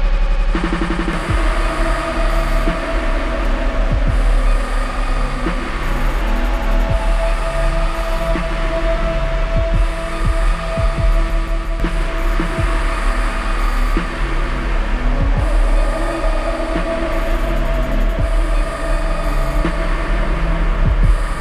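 Live electronic music played from a pad-and-knob controller: a heavy, steady sub-bass under held synth tones and a repeating pattern of low bass notes.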